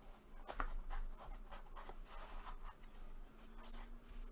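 A card box being slid out of its sleeve by gloved hands: faint scraping and rubbing, with a few light clicks, the sharpest about half a second in.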